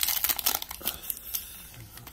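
Foil trading-card pack wrapper crinkling as it is pulled open by hand, a run of crackles that dies down after about a second and a half.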